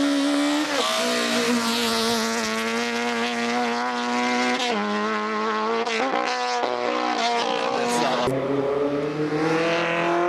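Small racing car's engine revving hard at high rpm under full throttle, its pitch dropping at each of several gear changes.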